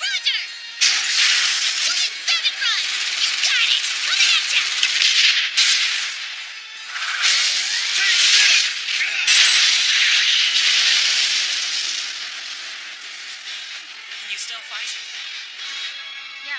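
Anime soundtrack of loud hissing, rushing sound effects over music, in two long surges that die down after about twelve seconds.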